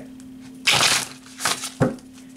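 A tarot deck being shuffled by hand: a papery rustle of cards sliding about two-thirds of a second in, then a short sharp tap near the end.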